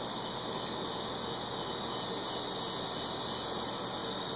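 Steady background hiss with a faint hum and no distinct sound events.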